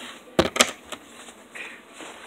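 Two sharp knocks close together, then a fainter one shortly after: handling noise as a cup and a phone are moved.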